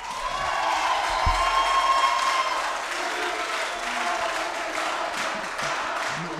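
Crowd applauding and cheering, with shouting voices held over the clapping in the first few seconds.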